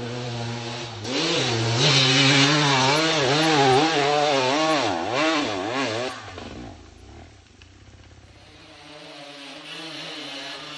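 KTM EXC 250 two-stroke enduro motorcycle engine revving hard under load on a steep climb, its pitch rising and falling quickly as the throttle is worked, then fading away about six seconds in. A quieter engine builds up again near the end.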